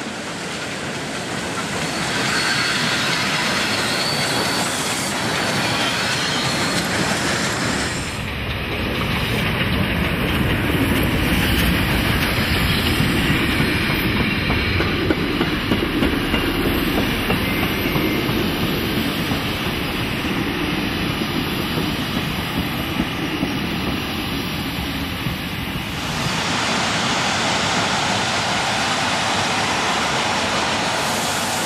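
Double-headed steam train, German class 50 2-10-0 no. 50 3673 leading the French 241 A 65 4-8-2, running past through a station. The locomotives go by, then the coaches roll past with their wheels clattering over the rail joints.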